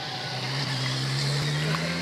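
Motor vehicle engine running with a steady low hum, slowly growing louder as it draws near.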